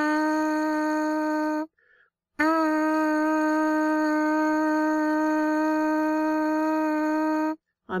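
Lips buzzing into a trumpet mouthpiece with no trumpet attached, a steady single pitch as a lip warm-up. One buzz stops under two seconds in; after a short pause a second buzz on the same note, with a slight scoop up into it, is held for about five seconds.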